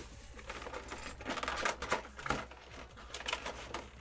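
Cardboard collection box being opened and unpacked by hand: irregular rustling and crinkling of card and plastic packaging, with scattered sharp clicks.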